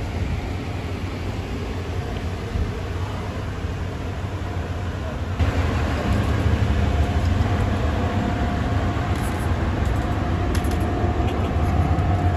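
Outdoor ambient noise: a steady low rumble under a hiss, getting louder about five seconds in, with a faint steady hum in the second half.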